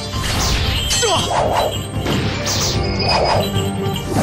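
Dramatic background music under a run of dubbed fight sound effects: several sudden crashes and whacks of weapon strikes, one with a falling swish.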